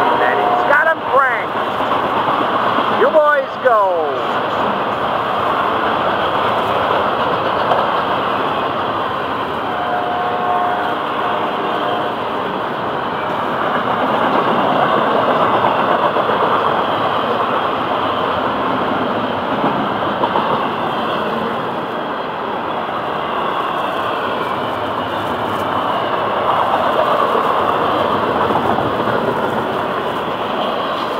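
Florida East Coast Railway intermodal freight train's double-stack container well cars rolling past at about 40 mph: a loud, steady rumble of steel wheels on the rails, with a few short pitched sounds in the first few seconds.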